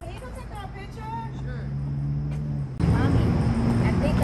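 A steady low hum, like a vehicle engine running, with faint voices. It grows louder about three quarters of the way through, when the voices become clearer.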